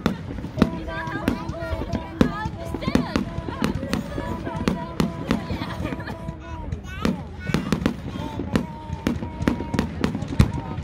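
Aerial fireworks bursting in quick succession: a steady run of sharp bangs and crackles, a few a second.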